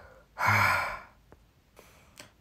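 A man sighing heavily: one breathy, voiced 'hah...' starting about half a second in and dying away within a second.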